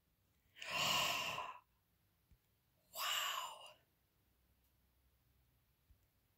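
A woman's two long, breathy sighs, each about a second, the first about half a second in and the second about three seconds in.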